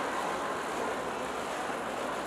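Steady background noise of a crowded event venue, an even hiss with no distinct events.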